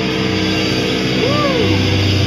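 Amplified electric guitar and bass left ringing through the amps in a steady, loud drone with no drumming, as a hardcore song ends; about a second and a half in, a tone swoops up and back down in pitch.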